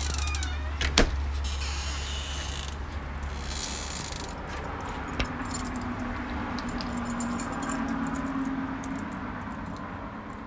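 Light metallic jingling and clinking, with sharp knocks about one and four seconds in. Low handling rumble sits under the first few seconds, and a low steady hum runs from about five to nine seconds.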